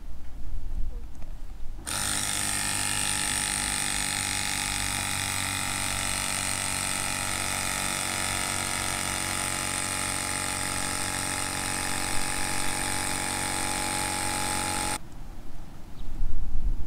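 Small portable electric air pump running at a steady pitch for about 13 seconds, inflating a child's bicycle tyre; it switches on about two seconds in and cuts off near the end.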